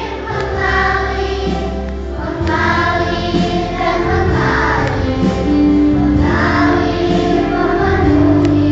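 A children's choir singing a Christian worship song in long sung phrases over steady instrumental accompaniment.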